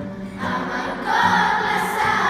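Children's choir singing together, held sung notes swelling louder a little over a second in.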